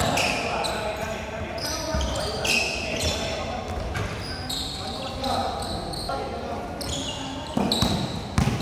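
A basketball being dribbled and bounced on a hard court, with sharp, irregular bounces. Short, high sneaker squeaks come again and again over the play.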